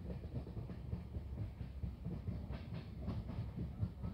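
Moving passenger train heard from inside the carriage: a steady low rumble of wheels on the track, with irregular clicks and rattles that come thickest between about two and a half and three and a half seconds in.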